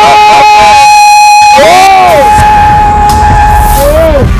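Dramatic film music: a long held note under quick chanted vocal calls in the first second. About a second and a half in comes a drawn-out shout that rises and falls, and another begins near the end.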